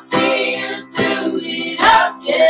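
Live worship song: women's voices singing together over keyboard and strummed acoustic guitar.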